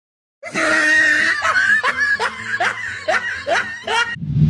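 Laughter as a sound effect: a drawn-out first note, then a string of short falling 'ha' bursts, about two and a half a second, starting about half a second in.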